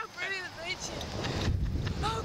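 Two riders on a Slingshot reverse-bungee ride laughing and squealing in high, quick rising-and-falling calls as they flip upside down, with wind rumbling on the microphone about a second and a half in.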